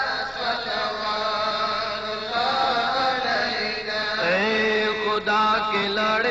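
Devotional Islamic chanting: a voice holds long, drawn-out notes that slide slowly up and down in pitch.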